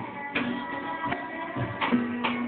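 Acoustic guitar strummed in a steady rhythm, with a violin playing held notes along with it.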